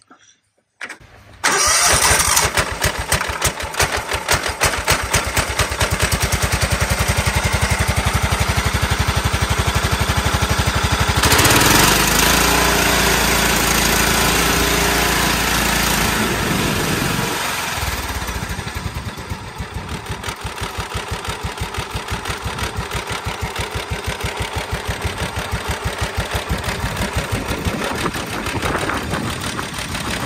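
Cub Cadet HDS 2135 riding mower engine cranked by its electric starter, catching about a second and a half in without starting fluid, its carburettor freshly rebuilt. It runs fast, gets louder for a few seconds around the middle, then drops to an evenly pulsing idle that is a little on the slow side.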